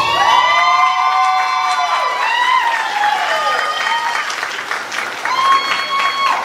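Audience applauding and cheering, with long high-pitched calls that slide downward and clapping that thickens in the second half.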